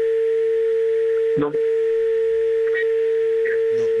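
A steady, unbroken telephone line tone, a single mid-pitched note, sounding over the phone-in caller's line, which is breaking up. A short voice cuts in briefly about halfway through.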